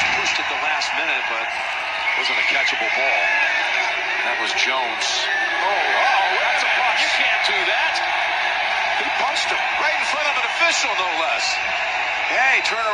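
Televised NFL game playing back through a device speaker: steady stadium crowd noise with a male commentator talking over it.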